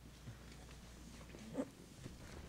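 Office chairs being pulled out and sat in at a table, with one short loud chair creak about one and a half seconds in.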